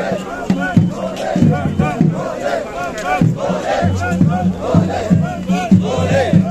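A large crowd of devotees shouting religious chants, many voices overlapping in repeated call-like shouts, with a low steady hum underneath.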